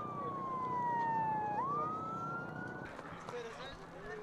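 A single siren-like tone that slides slowly down in pitch, swoops back up about one and a half seconds in, and cuts off near three seconds in, over crowd noise and voices.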